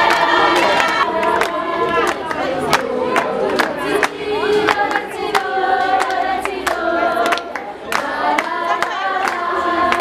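A group of girls singing together, with hand claps keeping a steady beat about twice a second.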